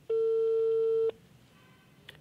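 Telephone call tone heard on an outgoing call: one steady beep about a second long, then quiet as the line waits to be answered.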